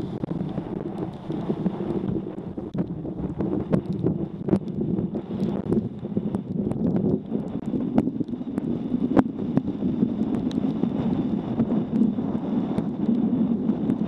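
Wind buffeting a helmet-mounted camera's microphone while cycling on a wet road, a steady rushing rumble with the hiss of tyres on wet tarmac. Frequent sharp ticks and knocks are scattered through it.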